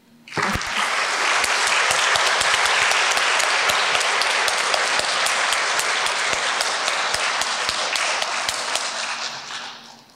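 Audience applauding: many hands clapping together, starting just after the start, holding steady, then dying away near the end.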